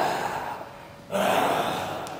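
Loud, rasping breaths. One is fading out at the start and the next starts sharply about a second in, then fades away.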